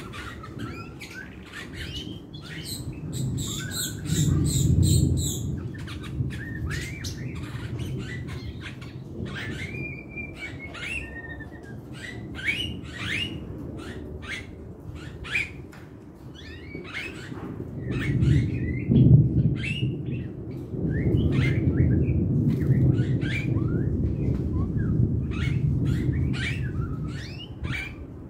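Caged jalak rio-rio myna calling: a continuous run of short, sharp squawks, chirps and whistled notes, with one longer rising-and-falling whistle about ten seconds in. A low rumble swells underneath it briefly about five seconds in and again through the last third.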